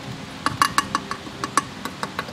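A hand tapping on the thin stamped-metal pitch stopper mount on the firewall of a 2015-and-later Subaru: a quick run of about a dozen light, tinny knocks. The thinness of the metal that they show is why this mount is known to separate from the firewall.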